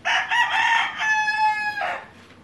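A rooster crowing once, loud: a rough, broken opening for about a second, then a long held note that ends in a short lower tail just before two seconds.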